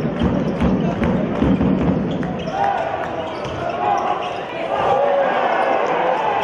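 Basketball being dribbled on a hardwood court, a run of sharp bounces in the first two seconds, followed by wavering high squeals over the arena's background noise as play moves to the basket.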